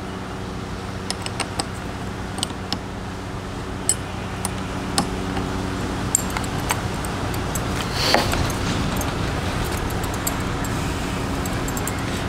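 Scattered light metallic clicks and clinks of a wrench working the brake-line fitting at a quad's handlebar master cylinder, over a steady low mechanical hum.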